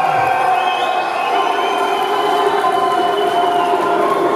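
A crowd cheering over loud music that holds long, steady notes, with a deep falling sweep just after the start.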